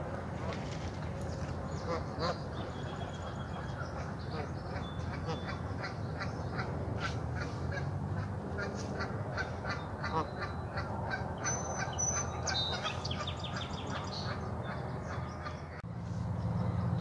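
Birds calling around a pond: many short, quickly repeated chirps and calls, with a few thin whistled notes about three-quarters of the way through, over a steady low rumble.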